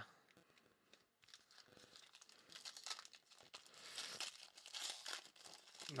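Foil wrapper of a Panini Mosaic trading-card pack crinkling and tearing as it is opened by hand. It is faint, starting about a second and a half in and growing busier toward the end.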